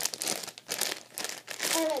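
Plastic packaging bag crinkling in several short, irregular crackles as the round foam sponges inside are squeezed by hand. A girl's voice starts near the end.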